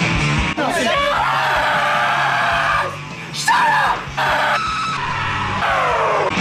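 Rock music, cut into under a second in by a man's loud, high-pitched screaming in three long stretches with short breaks about three and four seconds in; the last scream slides down in pitch near the end.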